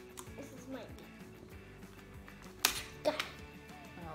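Clear tape being pulled off the roll: one short, sharp rip near the end, over quiet background music.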